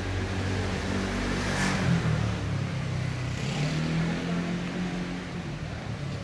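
A car engine running close by on the street, loudest about two seconds in.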